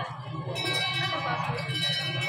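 A metal bell ringing, held from about half a second in, over crowd chatter: in a 1500 m race this is typically the bell rung for the final lap.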